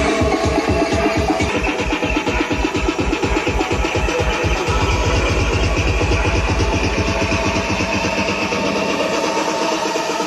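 Electronic dance music from a DJ's sound system, with a steady kick-drum beat. About halfway through, the beats come faster and closer together, as in a build-up.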